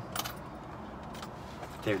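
Coins clinking as quarters are picked out of a handful of loose change: a few light metallic clicks.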